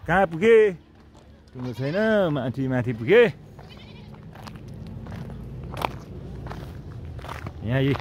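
A man's voice in drawn-out, sing-song sounds, then a sport utility vehicle's engine coming closer, its low hum growing steadily louder over the last few seconds.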